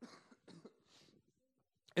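A few faint, short coughs in the first second, then near quiet.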